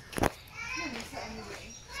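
A short thump about a quarter second in, then faint, high voices of a child at play.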